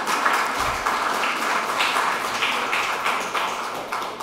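Audience applauding, the clapping slowly fading toward the end.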